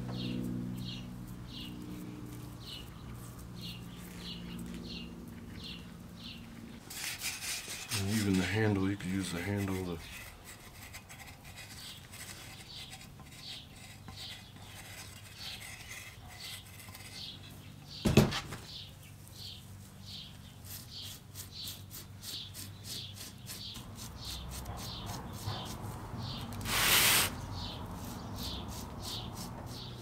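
Tools and fingers rubbing and scraping the damp clay neck of a large hand-built pot in short repeated strokes, slow at first and faster in the second half as a scouring pad drags the clay up. A single sharp knock about two-thirds of the way in, and a short, louder rasp near the end.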